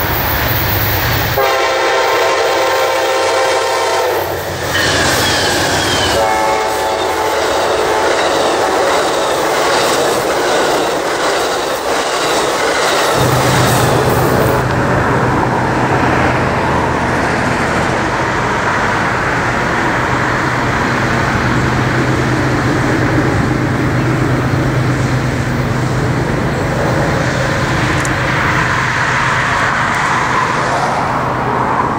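Diesel locomotive horn sounding two long blasts, the second about twice as long as the first, followed by the train running past with a steady low rumble and wheel-on-rail clatter.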